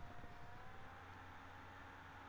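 Near silence: faint room tone, a steady hiss with a low hum and a thin, steady whine.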